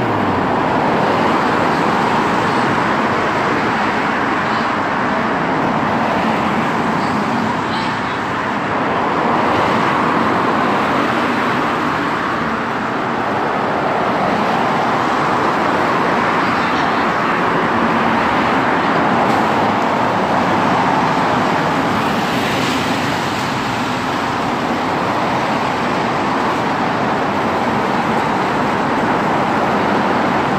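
Road traffic: cars driving past on a wet road, a steady tyre noise that swells and fades as vehicles go by.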